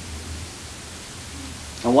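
Room tone in a pause between speech: a steady low hum with an even hiss. A man's amplified voice starts again just before the end.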